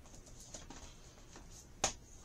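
Faint handling noise with a few light ticks, then one sharp click just before the end.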